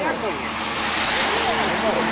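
A group of road bicycles passing close by, the hiss of tyres and rushing air swelling to a peak about a second in, with riders' voices calling out over it.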